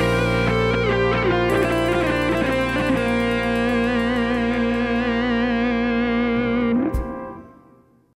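Closing bars of a song, led by guitar: a wavering melody line steps down over a sustained chord and settles on one held note with vibrato. The music stops abruptly about seven seconds in and dies away.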